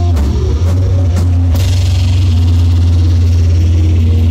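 Live rock band playing electric guitar, bass and drum kit. A few drum hits come early, then about a second and a half in a long ringing crash sustains and slowly fades over a steady low bass note.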